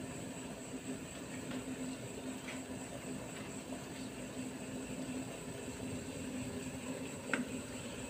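Double boiler heating on a gas stove: a steel pan of butter set over a pot of water, giving a steady low hiss with a faint hum and a few faint ticks.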